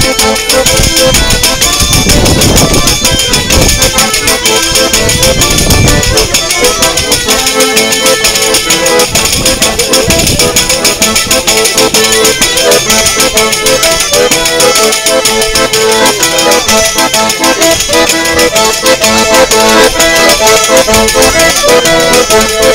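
Loud accordion music in a traditional style, steady pitched notes over a driving rhythm.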